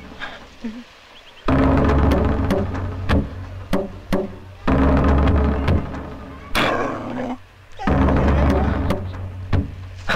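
Dramatic film background score: three deep, drum-like hits with held tones, about three seconds apart, each fading away.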